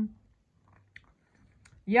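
A person chewing food, faint, with a couple of small clicks.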